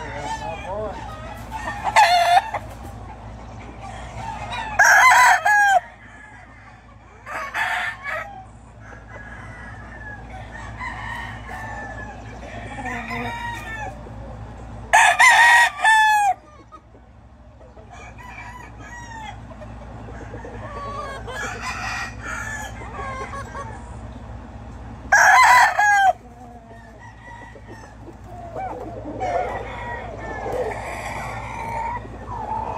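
Gamecocks crowing: loud close crows about every ten seconds, with shorter loud calls in between and many fainter crows from other roosters further off.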